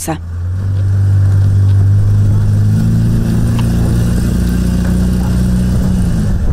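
Engine of a small Toyota cab-over pickup truck running as it pulls away, swelling in the first second and then holding a steady note that rises a little about halfway through.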